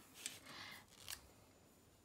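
Faint rustling of watercolour paper as a hand moves over the sheet, with two light clicks in the first second or so.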